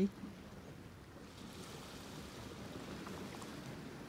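Faint, steady wash of sea surf, swelling slightly about a second in.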